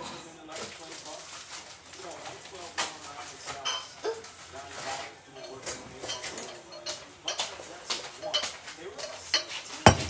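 Cups and dishes being handled, clinking and knocking every second or so. The loudest knock comes near the end, as a clear glass mug is set down on the counter.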